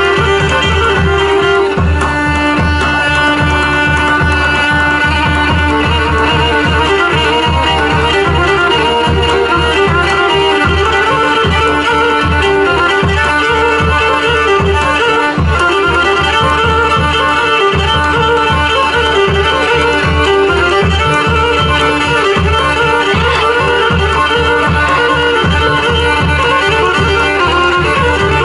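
Greek folk dance music accompanying a line dance: a bowed-string melody over a steady, even drum beat, loud and unbroken.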